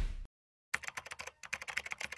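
Rapid typing on a laptop keyboard: a quick, irregular run of light key clicks that starts a little under a second in. Before it, the tail of a swoosh transition sound fades out, followed by a brief silence.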